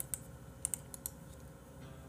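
A few sharp clicks of a computer keyboard, about five in quick, irregular succession in the first second.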